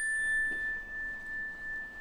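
A single-note resonator chime bar, a metal bar on a wooden block, ringing on after a mallet strike: one clear high tone slowly fading. It is the signal for the group to settle into silence.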